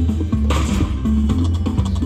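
Diamond Trails: Safari Winnings slot machine playing its free-spin game music: a steady bass line with plucked-string notes, and a brighter sound effect layered on about half a second in as a free spin plays out.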